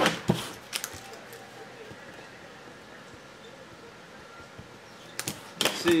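Short sharp clicks and taps of trading cards being handled and picked up off a tabletop: a few right at the start, a faint quiet stretch, then a quick cluster about five seconds in.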